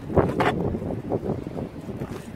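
Wind buffeting the microphone, with a couple of short knocks near the start.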